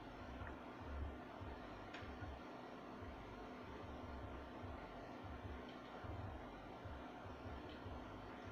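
Faint, muffled bass of music playing elsewhere in the building, heard as low, uneven thuds over room tone: the recurring noise the resident calls very loud.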